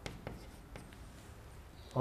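Chalk on a blackboard: a few light taps and scratches as a word is written, mostly in the first second, then only faint sounds.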